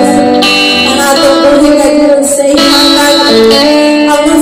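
Live worship band: a woman singing into a microphone over electric guitar accompaniment, loud and steady.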